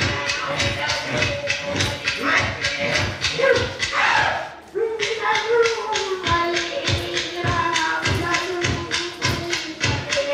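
Traditional Aboriginal song: a voice singing over even clapstick beats, about three a second. The singing breaks off briefly about halfway through, then comes back on a held note that slowly falls.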